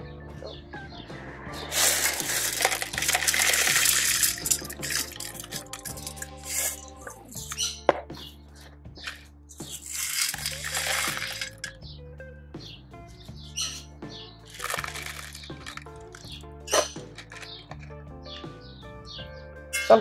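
Expanded clay pebbles (LECA) poured from a stainless steel bowl into a pot, rattling in three runs of one to two seconds each, over background music with a steady bass line.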